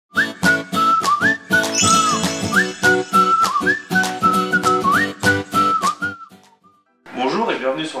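Short intro jingle: a whistled melody over a steady beat and chords, fading out about six seconds in. A man's voice starts just before the end.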